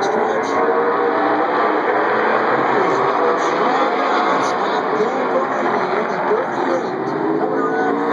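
A pack of short-track race car engines revving and rising and falling in pitch as the cars run through the turns, several engines overlapping.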